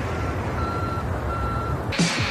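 Three short electronic beeps at one steady pitch, the first one faint, over a continuous hiss and low rumble like radio static.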